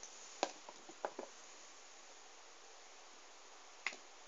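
A few light clicks and taps from small novelty erasers being handled and set down, several in the first second and a half and one more near the end, over a steady hiss.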